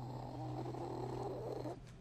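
A man making one long, throaty rasping sound with his voice that cuts off shortly before the end.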